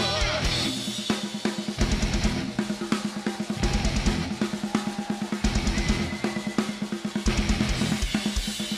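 Metal band playing live, led by the drum kit: rapid double bass drum runs in several short bursts with snare hits and cymbals, over a held low electric guitar note.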